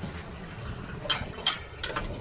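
Three light clicks of gloved hands handling the serpentine belt and nearby engine parts, over a faint steady background hiss.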